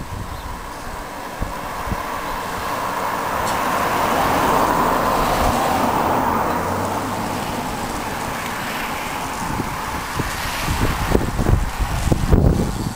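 A road vehicle passing by, its tyre and engine noise swelling to a peak about five seconds in and then fading away. Wind buffets the microphone throughout.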